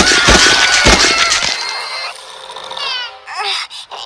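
A girl's cartoon voice screaming loudly for about two seconds, followed by a baby's whimpering, wavering cries.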